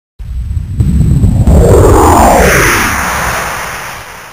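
Intro sound effect: a deep rumbling boom with a whoosh that rises in pitch, loudest about a second and a half in, then slowly fading away.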